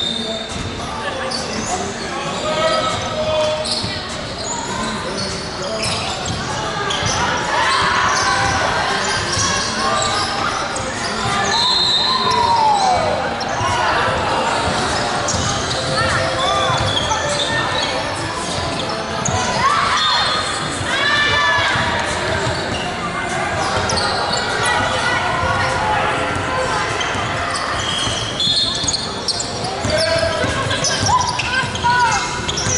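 Sounds of a basketball game on a hardwood indoor court: the ball bouncing and thudding on the floor, sneakers squeaking in short chirps several times, and players' voices calling out, all carrying the echo of a large hall.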